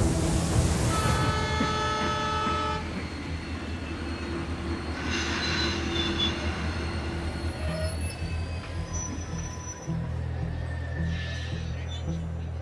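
A short rush of splashing water, then background music mixed with railway train sounds.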